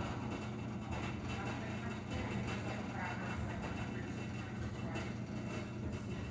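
Whirlpool front-loading washing machine running with a steady low hum.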